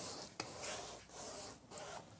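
Paintbrush stroking red paint across a canvas: a soft brushing hiss of bristles on the fabric, with a couple of light clicks.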